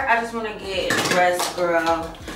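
A woman talking, with light clinks of small hard objects being handled on a counter.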